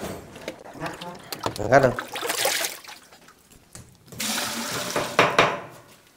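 Water pouring and splashing in a large tub, in two spells: a short one about two seconds in and a longer one near the end.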